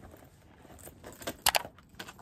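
Metal chain strap of a handbag jingling briefly as the bag is lifted, about a second and a half in, after some faint handling noise.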